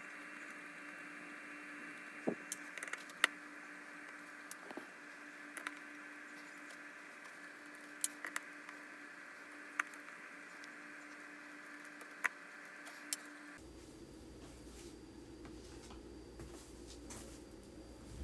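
Light, scattered clicks, about eight in all, over a faint steady hiss and hum: a Torx screwdriver working the small screws around a Jibo robot's screen, and hands handling its plastic shell. The background noise changes about three-quarters of the way through.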